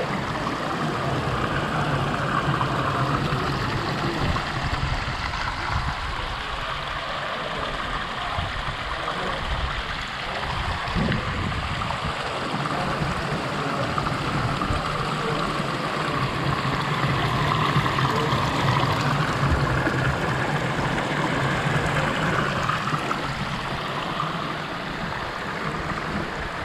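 Water pouring from a row of carved lion-head spouts into a long stone trough, a steady splashing.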